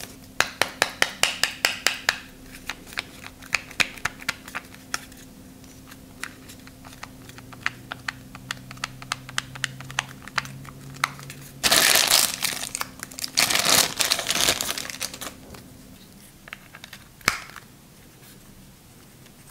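Hands handling an NVMe SSD enclosure, with a quick run of light clicks over the first few seconds. About twelve seconds in comes plastic packaging crinkling loudly in two bursts as a USB cable is unwrapped. A single click follows near the end.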